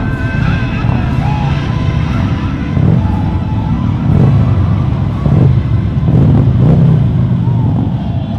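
A pack of large touring motorcycles riding by, engines running, with several louder revving surges in the second half.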